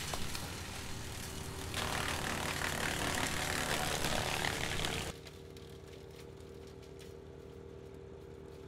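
An engine running steadily, its hum under a rushing noise. About five seconds in the level drops abruptly, leaving a quieter, even hum.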